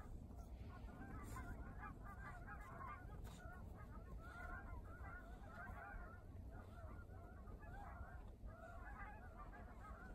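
A flock of birds calling without pause, faint, with many short overlapping calls, over a low steady rumble.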